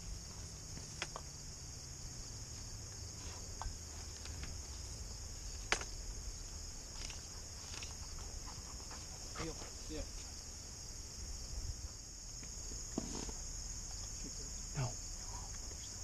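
Steady high-pitched insect chirring over a low rumble of wind on the microphone, broken by a few faint short clicks and rustles.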